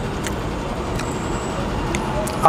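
Steady road traffic noise from a busy street, with a few faint clicks.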